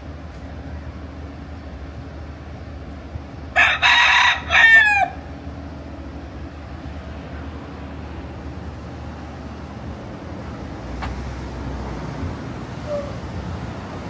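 A rooster crowing once, about three and a half seconds in: a loud call about a second and a half long that drops in pitch at the end, over the steady hum of passing street traffic.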